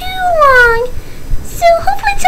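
A single long meow, falling in pitch over almost a second, followed near the end by shorter high-pitched vocal sounds.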